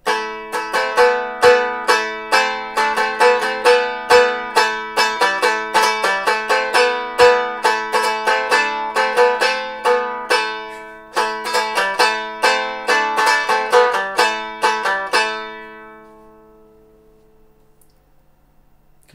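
Germanic round lyre played with a plectrum in free improvisation: quick strummed chords, several a second, over open strings left ringing underneath. The playing stops about three seconds before the end and the strings ring out and fade.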